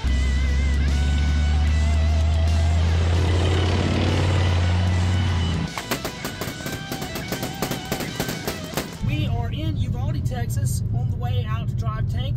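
A loud, deep rumble for the first half, then a rapid, irregular run of rifle shots on a firing range, then another low rumble under voices, with music mixed in.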